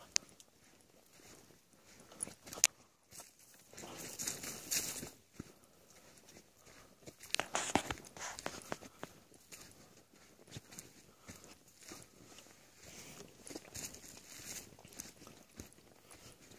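Footsteps of a hiker on a dirt trail strewn with dry leaves, crunching unevenly, with brushing through dry twigs and a couple of sharp clicks.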